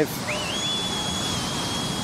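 Steady rushing noise of breaking surf, with a thin high whistling tone that slides up about a quarter second in and then holds level.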